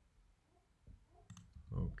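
Faint room tone, then a couple of quick clicks of a computer mouse button about a second and a third in, followed by a man starting to speak near the end.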